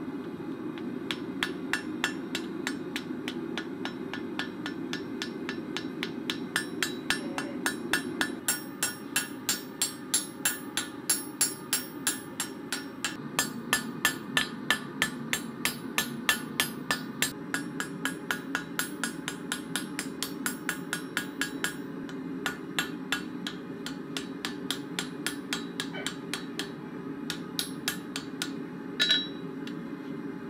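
Hand hammer forging a red-hot steel block held in tongs on an anvil: a steady run of ringing blows, about two a second, loudest through the middle and thinning out after about twenty seconds. A steady low rumble runs underneath.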